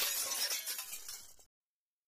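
Sound effect of glass shattering. It starts suddenly and loud, crashes for about a second and a half, then cuts off abruptly to silence.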